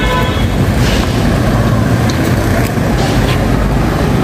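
Loud, steady outdoor rumble of road traffic, heaviest at low pitch, with wind on the microphone.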